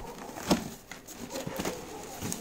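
Cardboard parcel flaps being handled: a sharp tap about half a second in, then a few light clicks and rustles.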